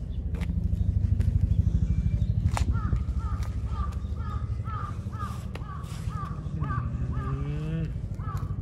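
A bird repeats a short, hooked call about twice a second from roughly three seconds in. Under it runs a low, steady rumble, loudest in the first few seconds.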